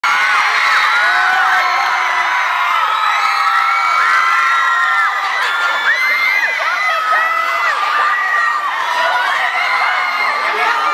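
Theatre audience cheering and screaming, many overlapping high-pitched shrieks and whoops.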